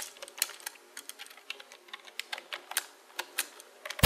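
Typing sound effect: quick keyboard keystroke clicks, about four a second, matching text typed out on screen.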